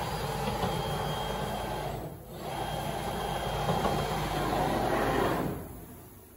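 Pusher carriage of a Salvamac Salvapush 2000 optimising saw driving along its fence in a simulation run. The drive runs steadily for about two seconds, pauses briefly, then runs again a little louder for about three seconds before stopping.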